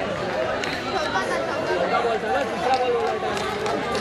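Several people talking at once: overlapping chatter of voices with no one voice standing out.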